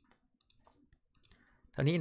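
A few faint, sharp computer mouse clicks, spaced irregularly, as items are selected on screen. Then a man starts speaking near the end.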